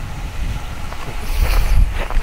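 Wind buffeting the camera microphone: a rough, uneven low rumble that swells into a stronger gust about a second and a half in.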